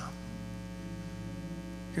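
Steady electrical mains hum with a buzzing stack of even overtones, holding one pitch throughout.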